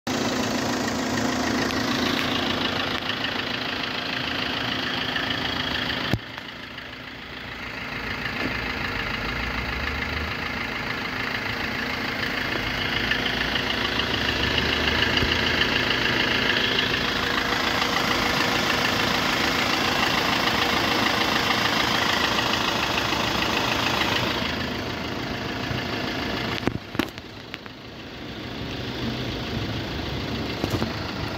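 Fiat Punto Evo's 1.3 MultiJet diesel engine idling steadily, briefly quieter about six seconds in and again near the end.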